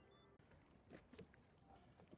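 Near silence, with a few faint short knocks about a second in.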